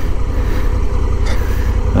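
Honda Africa Twin 1100's parallel-twin engine idling with a steady low rumble as the bike creeps forward at walking pace.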